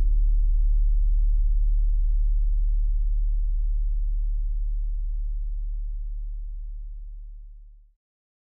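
A deep, steady low drone in a film soundtrack, close to a pure tone with a few faint overtones, slowly fading away. Its higher overtones die out within the first few seconds, and the drone fades to nothing near the end.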